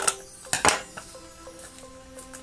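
Scissors clicking against the plastic shrink-wrap of a small cardboard blind box as the blades try to get into the tough wrap: a light click at the start and a sharper, louder one just over half a second in.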